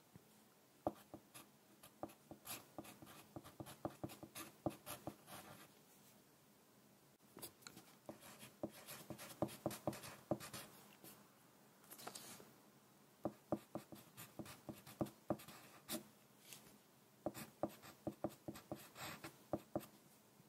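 Wooden pencil writing on paper close to the microphone: runs of short scratching strokes and light taps, in several bursts with brief pauses between them.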